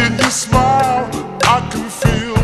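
Vaporwave edit of a sampled soul/R&B song: a wavering sung vocal line over a drum beat and bass.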